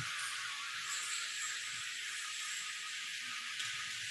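Steady high hiss with no music playing, and a faint thin high whine running through it from about a second in.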